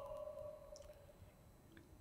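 Near silence: a faint ringing fades out in the first half second, then only room tone with a couple of tiny clicks.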